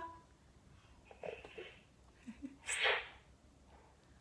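A baby's soft breaths and small vocal sounds at a toy microphone: faint snatches about a second in, two brief low sounds past the middle, then one louder breathy puff.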